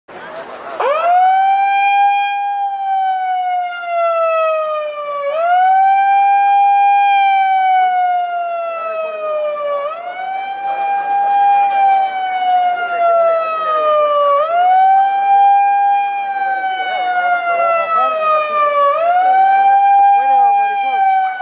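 A siren wailing in a repeating cycle. It starts about a second in, and each wail climbs quickly to its top pitch and then sinks slowly, starting over about every four and a half seconds, five times in all.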